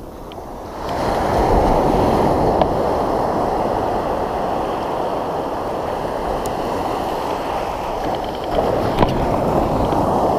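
Ocean surf washing and breaking around a wading angler: a steady rushing that comes in about a second in.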